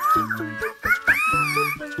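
WowWee Fingerlings interactive unicorn finger toy, hung upside down, making two high, squeaky electronic calls that rise and fall, the second longer, over background music.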